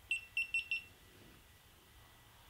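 GoPro Hero3 Black Edition camera beeping four times in quick succession, short high beeps within the first second, as recording is stopped from the phone app.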